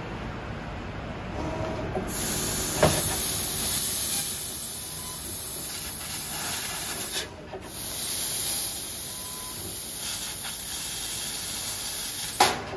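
Fiber laser cutting head cutting sheet metal: a steady high hiss of assist gas from the nozzle starts about two seconds in, breaks off for a moment near the middle, then resumes. A short click comes just after the hiss starts.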